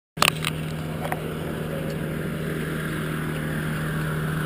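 Stearman biplane's radial engine running steadily on the ground, an even drone. A few sharp knocks sound in the first half second.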